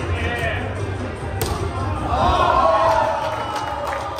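Raised voices over background music, with one sharp smack about a second and a half in.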